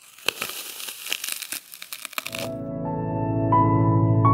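Bite into a crisp apple followed by chewing: crunching and crackling close to a lapel microphone for the first two seconds or so. Then soft ambient music with held piano-like notes fades in and becomes the loudest sound.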